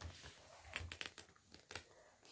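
Faint rustling and crinkling of paper as book pages are turned by hand, with a few short crinkles about a second in and again near the end.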